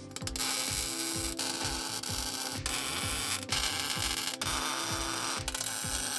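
Arc welding on steel tubing: the welder crackles in about six short back-to-back runs, each a second or so long, with brief breaks between them.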